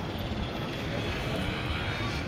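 Steady outdoor city noise: an even, low rumble of distant road traffic with no distinct events.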